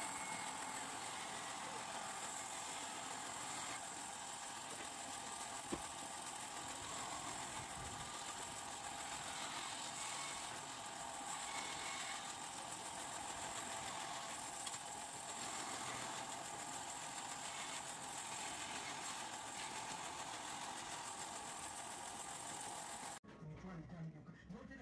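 Band saw running steadily while cutting a curved rocking-chair piece out of a wooden board. The sound cuts off suddenly near the end.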